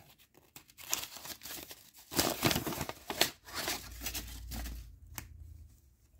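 Brown paper wrapping on a card pack being torn open by hand, with paper crinkling in irregular bursts that stop just after five seconds in.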